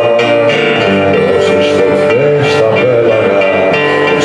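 Live acoustic guitar playing in an instrumental passage of a Greek song, with a sustained melody line above it that slides in pitch a few times.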